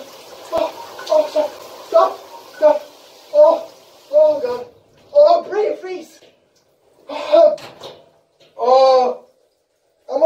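Cold water spraying from a handheld shower head while a young man gasps and cries out in short bursts, about one or two a second, from the shock of the cold. The spray stops about halfway through, leaving a few more separate cries and one longer held cry near the end.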